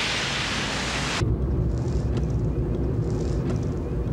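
Hiss of car tyres and spray on a wet, rain-soaked road, which cuts off sharply about a second in. A steady low rumble of a car on the move follows, with a few faint ticks.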